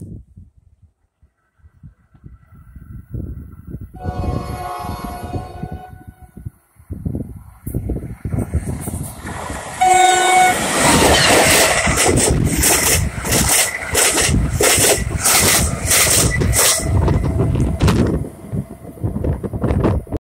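NJ Transit train approaching and passing at speed. Its horn sounds once further off about four seconds in, then gives a short loud blast about halfway through as the locomotive nears. That is followed by the loud rush and rhythmic clatter of wheels as the locomotive and cars go by.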